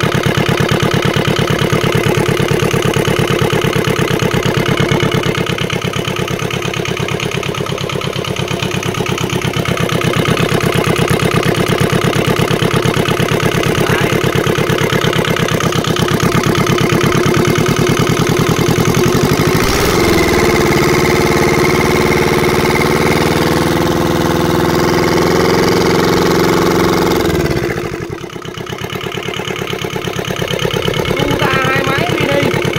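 Kubota two-cylinder mini diesel engine, 66 mm bore, running steadily on a test run. About twenty seconds in its note changes, and about two seconds before the end it briefly dips in level.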